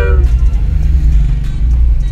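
Low, steady rumble of a car's engine and tyres heard from inside the cabin while driving slowly, with background music playing. A sung vocal note fades out right at the start.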